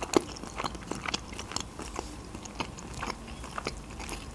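Close-miked chewing of a mouthful of homemade pizza, a quiet run of irregular wet mouth clicks and smacks, several a second.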